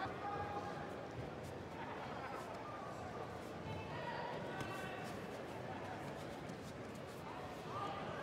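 Large sports-hall ambience with a few voices shouting out across the hall, and light slaps and thuds of bare feet and gripping hands on the judo tatami as two judoka fight for grips.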